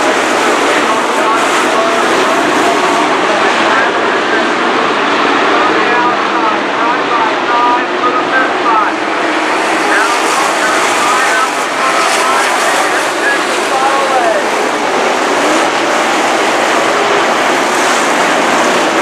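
A field of dirt-track sport modified race cars running laps together, their V8 engines loud and continuous, with many overlapping engine notes rising and falling as the cars accelerate and lift through the turns.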